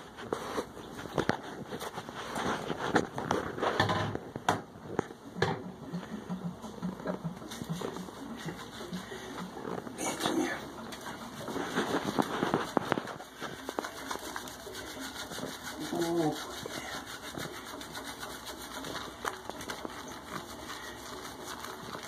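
Hands working shampoo into a wet cat's fur in a bathtub: irregular soft rubbing and squishing, with a few brief vocal sounds in between.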